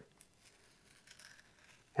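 Near silence with a few faint scratchy ticks: a utility knife blade slicing a shallow slot into a foam wing.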